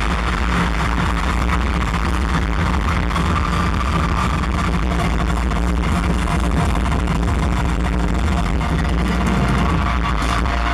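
Loud electronic music from a concert sound system, with a steady heavy bass that runs without a break.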